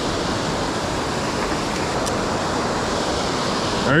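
Water rushing steadily over a low-head dam spillway.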